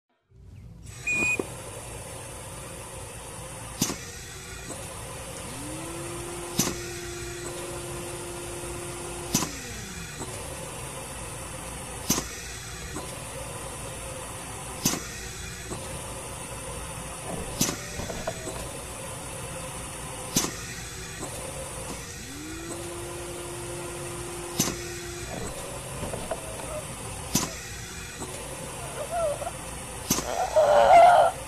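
Film soundtrack ambience: a steady hum with a sharp click about every two and a half to three seconds. Twice, a low tone glides up, holds for about three seconds and glides back down.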